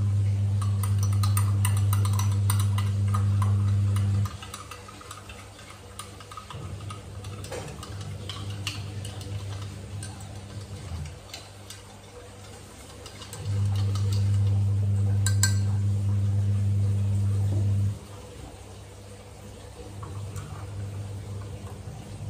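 Handheld electric frother whisking coffee in a glass, its small motor buzzing low and steady. It runs loudest in two spells of about four seconds, one at the start and one about two-thirds of the way through, with a quieter buzz between them and near the end.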